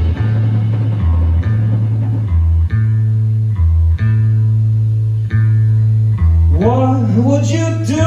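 A live rock band plays a slow cover: bass guitar holds long low notes under picked electric guitar. A singing voice with sliding pitches comes in over the band near the end.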